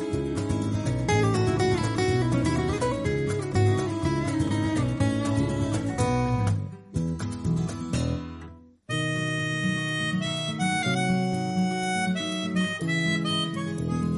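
Instrumental background music that fades out about seven seconds in and breaks off almost to silence; a new piece starts abruptly just before nine seconds in.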